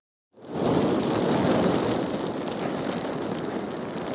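Logo-intro fire sound effect: a rush of flame-like noise that swells in quickly after a brief silence and slowly fades away.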